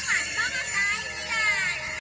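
Electronic chirping from battery-powered toy wands' sound chips, with quick rising and falling sweeps over a steady layer of high electronic tones.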